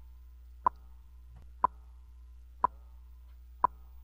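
Radio Reloj's signature clock tick: a short, sharp tick exactly once a second, four times, over a low steady hum.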